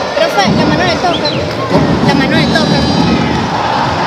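Speech: a man talking with other voices and crowd chatter behind.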